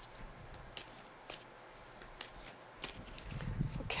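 A tarot deck being shuffled by hand: a quiet run of soft, irregular card clicks.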